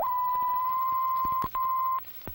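A single steady test tone on an old film print's leader, cutting out briefly with a click about a second and a half in, over faint crackle.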